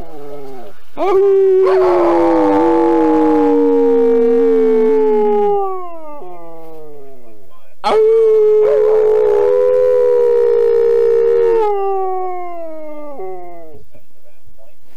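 A man and a dog howling together: two long howls of several seconds each, with the two voices overlapping. Each ends in shorter wails that slide down in pitch.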